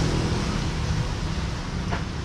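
Street traffic noise: a steady low rumble of motor vehicles running on the road alongside, with a small click near the end.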